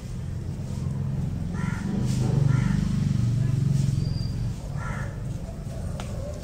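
Three short bird calls, two close together about two seconds in and a third near the end, over a low rumble that swells in the middle and is the loudest sound.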